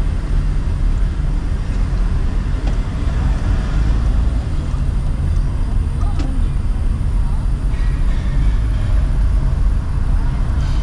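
Car cabin noise while driving slowly in city traffic: a steady low engine and road rumble heard from inside the car.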